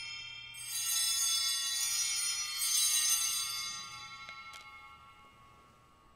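Altar bells rung at the elevation of the host during the consecration: bright metallic ringing, struck again about half a second in and again about two and a half seconds in, then fading slowly away.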